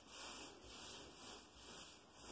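Faint, repeated swishing of a paintbrush stroked back and forth over a painted wall, about two to three strokes a second.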